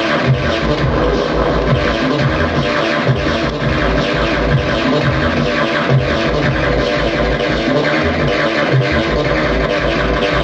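Modded Atari Punk Console, a DIY square-wave synth box, played by hand through its knobs, giving continuous buzzy electronic tones layered with other electronic music gear. Picked up by a camera's built-in microphone.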